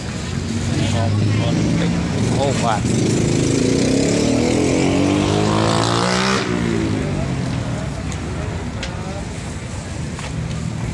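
A motor vehicle engine speeding up, its pitch rising for about three seconds from roughly a third of the way in, then ending suddenly; people's voices are heard around it.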